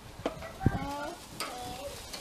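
Meat sizzling on a gas barbecue grill, with a few sharp clicks of metal tongs against the grill as the meat is turned.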